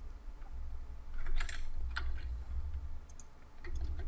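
A handful of short, scattered clicks from a computer mouse and keyboard as the mesh is edited, over a low steady hum.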